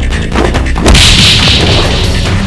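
A whoosh sound effect with sweeping pitch, then a sudden loud whip-like crack about a second in with a hissing tail, over heavy soundtrack music.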